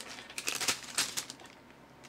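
A small clear plastic bag being handled and moved, crinkling, with a few light clicks and rustles spread through the first second and a half.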